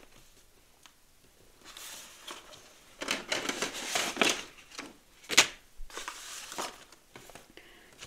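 Sheets of paper and cardstock rustling and sliding as they are handled and pulled out, starting about two seconds in, with one sharp tap at about five and a half seconds.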